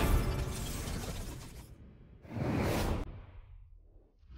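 Produced sound effects for an animated logo: the last hit of the intro music rings out and fades, then about two seconds in a whoosh with a shattering crash swells up and dies away.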